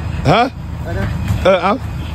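A man's short spoken calls, one brief exclamation and then a couple of words, over a steady low background rumble.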